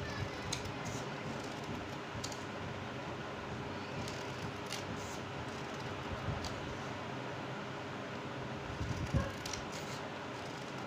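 Scissors snipping through a folded paper sheet in short partial cuts: a scattering of small clicks over a steady background hiss, with a low thump a little after nine seconds.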